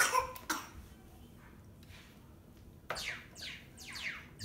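Mini electronic keyboard giving short, sharp sounds that sweep downward in pitch: one right at the start, another half a second later, then a quick run of three or four near the end.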